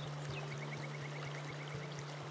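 Water running and splashing over rocks in a small cascading stream, a steady rush, over a steady low hum. A quick high trill of about a dozen short notes runs through the middle.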